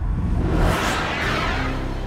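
Logo-intro sound effect: a swelling whoosh over a low rumble, peaking about a second in, then settling into a held music chord near the end.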